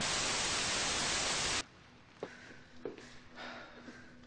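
TV static sound effect: a loud, even hiss for about a second and a half that cuts off suddenly. After it comes quiet room sound with a faint hum and two soft knocks.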